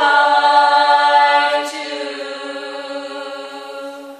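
Small vocal group with piano holding a long sustained chord; about halfway through it drops sharply in loudness and rings on more quietly.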